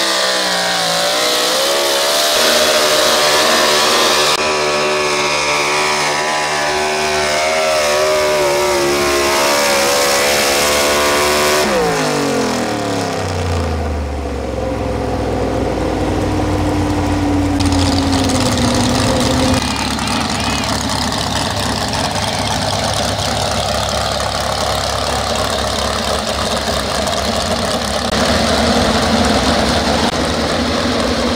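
Pro stock 4x4 pickup's engine at high revs under full load, pulling a sled, its pitch wavering as it works. About twelve seconds in the throttle closes and the revs fall away, and engines then idle for the rest.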